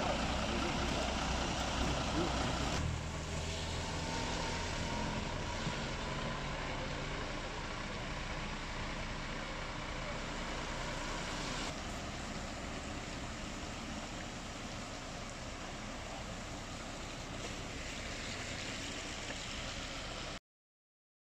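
Steady running of an idling fire engine's diesel engine under an even outdoor hiss, changing abruptly about three seconds in and again about twelve seconds in.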